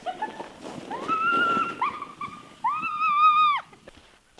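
A girl's voice squealing with excitement: a few short giggly chirps, then three drawn-out high-pitched squeals, the last the longest and dropping in pitch at its end.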